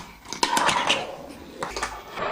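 Lowpro K1 fingerboard clacking on its surface during tricks: a sharp clack about half a second in, a short stretch of rolling and clatter, then a few lighter clicks.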